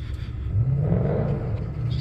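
A car passing on the road, its engine note rising and swelling to a peak about a second in, then fading, over a steady low rumble.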